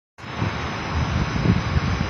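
Wind rumbling on the microphone over steady outdoor background noise, cutting in suddenly just after the start, with a faint thin steady whine above it.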